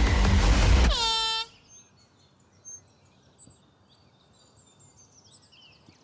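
A loud rushing whoosh, then a short horn blast that stops about a second and a half in, followed by birds chirping faintly.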